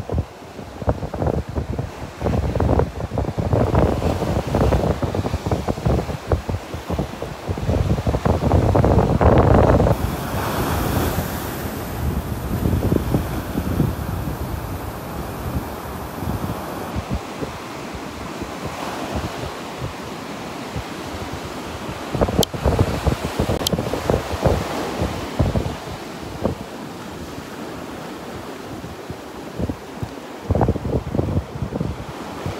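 Wind buffeting the microphone in gusts, heaviest in the first third, over the steady wash of rough surf breaking on the beach.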